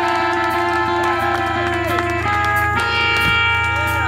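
Electric guitars of a live rock band holding sustained, ringing notes through amplifiers, their pitches swooping up and down, with no drum beat. A steady low amplifier hum runs underneath.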